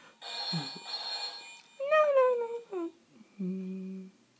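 Electronic telephone ring from a tabletop Deal or No Deal 'Beat the Banker' game, the banker calling with an offer. About two seconds in comes one drawn-out voice-like cry, falling in pitch, and near the end a short steady low electronic tone.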